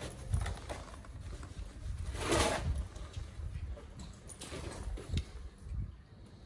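Rustling and swishing of a motorcycle jacket's fabric being handled as its inner lining is pulled out, with a louder swish about two seconds in and a few small clicks.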